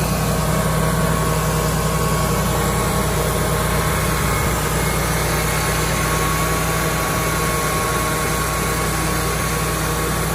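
Wood-Mizer portable band sawmill's gasoline engine running steadily at constant speed, with the band blade turning and sawdust blowing out of the chute.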